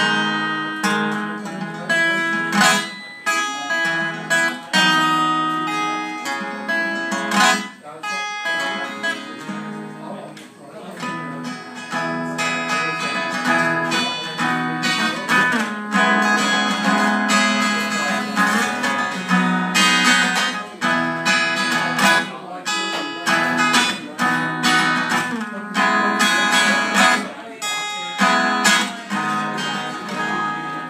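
Acoustic guitar strummed live, a steady run of chords that thins out briefly about ten seconds in.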